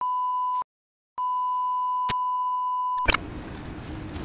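Electronic beep at one steady pitch: a short beep, a pause, then a long beep of about two seconds that cuts off about three seconds in. A steady hiss with a low hum follows.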